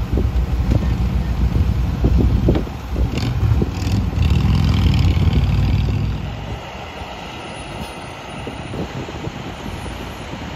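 A pickup truck driving past on a road, a loud low rumble with wind buffeting the microphone. About six seconds in it drops to a quieter, steady background.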